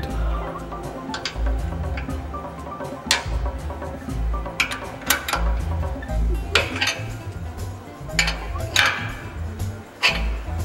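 Background music with a pulsing bass line, over which a steel wrench clinks sharply on metal about five times while tightening the nuts under a band saw's tilting table.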